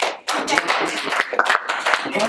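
A small group of people clapping, quick, irregular claps.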